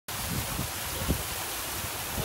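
A small waterfall pouring over rocks, a steady rush of water, with a few low thumps of wind on the microphone, the strongest about a second in.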